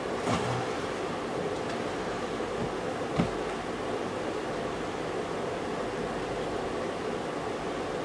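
Steady hiss of room noise, with faint rustles from a small paper gift bag being handled and a soft knock about three seconds in as it is set down on a wooden table.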